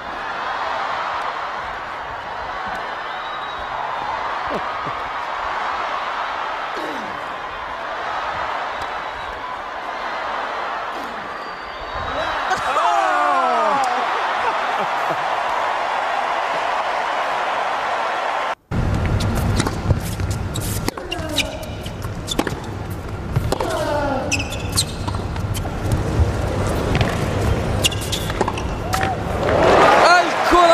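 Televised tennis match sound: crowd noise from the stands with ball strikes. An abrupt cut about two-thirds of the way in leads to a second stretch with sharp repeated hits and crowd reactions.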